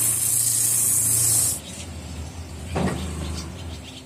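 A cobbler's electric sanding drum grinding a rubber shoe sole, a steady high hiss over the motor's hum. The grinding stops about a second and a half in, and the motor hums on more quietly as it winds down.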